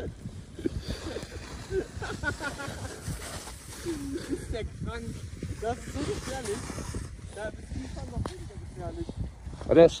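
People's voices calling out in short bursts without clear words, over a steady low rumble of wind on the microphone on a ski slope.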